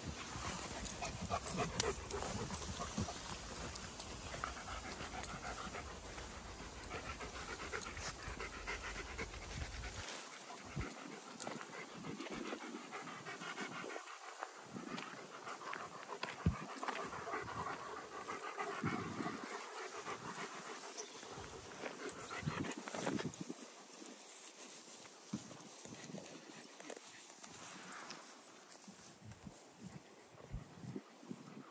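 A dog panting throughout, with a low rumble underneath that stops abruptly about a third of the way in.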